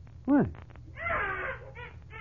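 A newborn baby's cry, one short wail about a second in, played as a sound effect in a 1950 radio drama.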